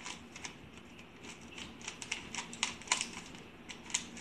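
A plastic 3x3 Rubik's Cube being twisted by hand again and again: an irregular run of quick clicks and clacks as its layers turn, busiest and loudest in the second half, over a faint steady low hum.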